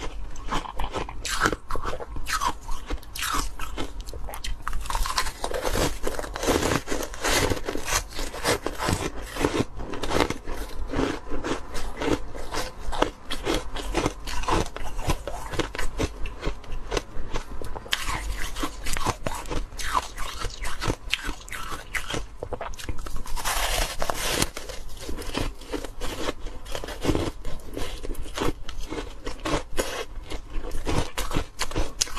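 Biting and chewing a coloured, moulded ice block close to a clip-on microphone: a dense, continuous run of crisp crunches and crackles as the ice breaks between the teeth.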